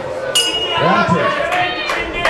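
Ring bell struck once, ringing for about a second and a half, signalling the fighters to start a round.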